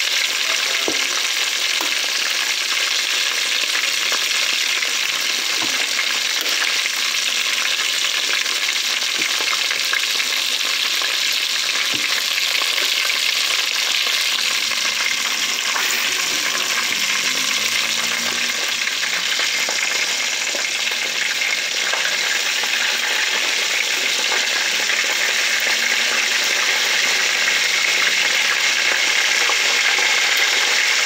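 Unfloured chicken wings frying in hot oil in a deep pot: a steady, crackling sizzle. A few sharp clicks sound over it.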